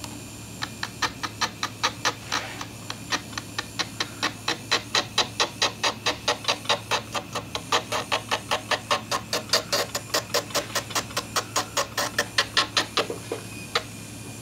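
Electric nail file (e-file) with a sanding-band bit, its motor humming steadily while the bit is stroked over an acrylic practice nail. A short rasping scrape sounds on each pass, about five a second, as the shine is buffed off around the cuticle.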